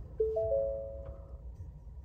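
A three-note electronic chime in the cab of a Ford F-150 Lightning as the electric truck powers on. The notes come in one after another and hang for about a second, over a faint low hum, with no engine sound.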